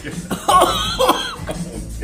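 A man coughing and gagging with a mouthful of wasabi: two harsh outbursts, about half a second and a second in, as the burning paste catches in his throat.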